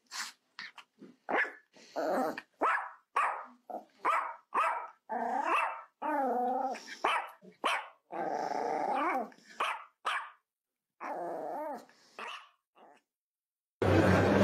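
A dog barking and growling in a string of short separate calls, several with a pitch that wavers up and down, with dead silence between them.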